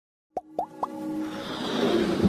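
Sound effects for an animated logo intro: three quick plops about a quarter second apart, each sliding up in pitch and each a little higher than the one before, followed by a building musical swell.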